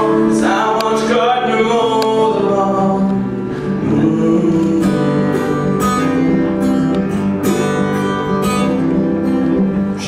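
A man singing to his own strummed acoustic guitar. The voice falls away about three seconds in, leaving the guitar strumming alone.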